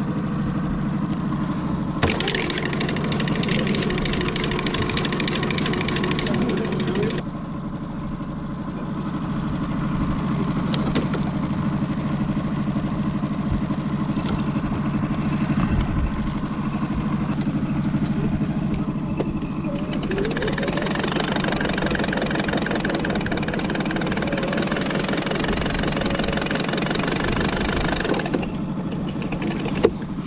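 Boat outboard motor running steadily at low speed. A louder rushing noise comes in from about two to seven seconds and again from about twenty to twenty-eight seconds.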